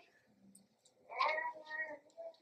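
A quiet pause, then about a second in a faint, brief high-pitched voice-like call with a wavering pitch.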